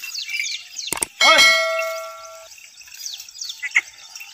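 A sharp metallic clang about a second in, ringing on and fading over about a second, with a shout at the same moment. Faint bird chirps around it.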